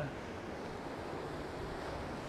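Steady rush of ocean surf washing over shoreline rocks, mixed with wind on the microphone.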